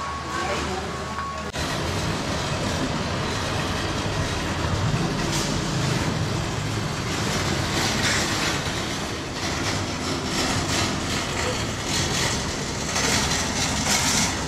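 Busy parking-lot ambience: a steady wash of traffic noise with scattered rattles from shopping cart wheels rolling over asphalt, and a murmur of voices. It starts abruptly about a second and a half in, replacing quieter store ambience.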